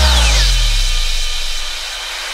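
A break in an EDM remix: the beat drops out and a deep bass note slides down in pitch while a high sweep falls, then the sound thins and fades away.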